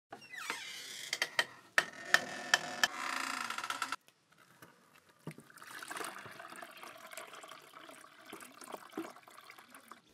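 Water pouring from a plastic jerrycan and splashing into a plastic basin, steady from about five seconds in. Before it, a series of sharp clicks and tones fills the first four seconds, ending abruptly.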